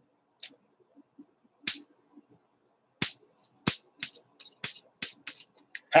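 Homemade static grass applicator built from an electric fly-swatter bug zapper, its high-voltage charge snapping: one sharp crack, then a rapid, irregular run of about ten more. The zapper circuit is working and holds a charge.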